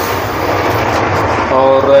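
Water running from a washbasin tap into the basin, with the steady rumble of the moving train coach underneath.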